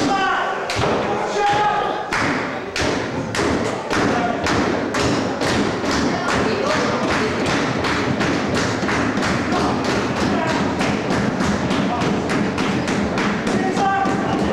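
Wrestling crowd beating out a steady rhythm of claps and stomps in unison, about three beats a second and picking up slightly after the first couple of seconds, the usual way an audience rallies a wrestler caught in a hold.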